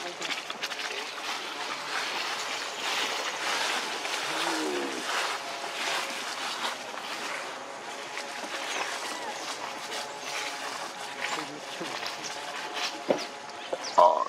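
Dry leaf litter crackling and rustling as small macaques scramble over it and pick through it. A short pitched, voice-like call comes about four and a half seconds in, and another right at the end.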